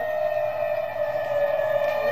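Tsunami warning siren sounding one long, steady wail, its pitch sagging slightly and rising again near the end.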